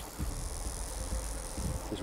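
Western diamondback rattlesnake shaking its rattle in a steady buzz. It is a defensive warning to back off, given from the coiled striking position, and a strike may follow.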